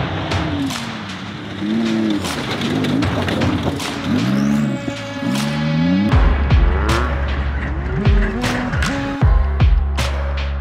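Off-road race truck engines revving hard at speed, pitch rising and falling over and over, mixed with music. A deep bass line comes in about six seconds in and the music takes over.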